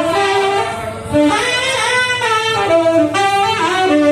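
Saxophone played live, a jazz melody of running notes that step and slide in pitch, with a brief breath about a second in.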